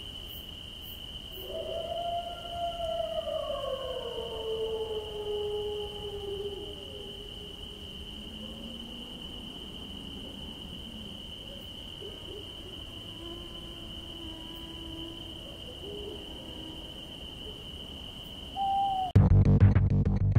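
Night-time film sound design: a steady high insect-like trill runs unbroken, with slow, long falling synthesized tones in the first few seconds. A loud pulsing music track cuts in about a second before the end.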